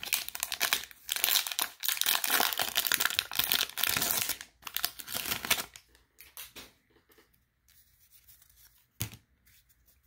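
Plastic wrapper of a baseball card pack being torn open and crinkled for about five and a half seconds. This is followed by a few faint handling sounds as the card stack comes out, and one sharp click about nine seconds in.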